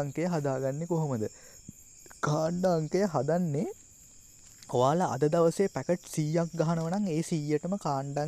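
A man talking in Sinhala in three phrases with short pauses between them, over a faint steady high-pitched tone.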